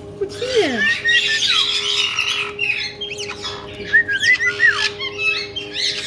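Caique parrots chirping and squawking: quick runs of short up-and-down chirps mixed with harsher squawks, in two busy bursts about a second in and again around four seconds in.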